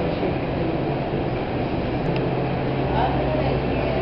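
Restaurant room sound: indistinct voices in the background over a steady low hum.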